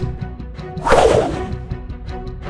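A fight-scene whoosh sound effect: one swelling swish of about half a second, about a second in, over background music.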